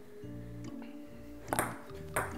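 Background music with sustained tones; about one and a half seconds in, a ping-pong ball clicks sharply twice in quick succession, paddle and table, as a point starts.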